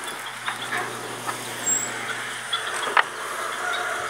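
Chickens clucking in a few short, scattered calls over a steady background hiss.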